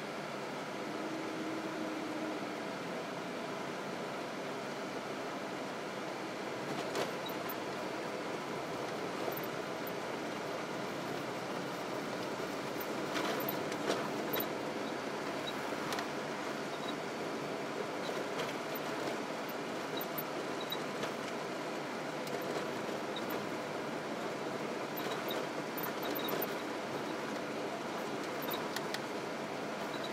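Steady road and engine noise inside a moving car's cabin, with a few light clicks scattered through it.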